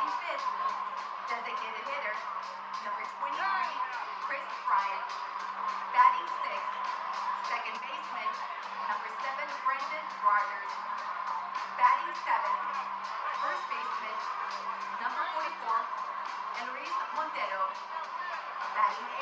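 Stadium PA music with a steady beat over the murmur of a large crowd in the stands.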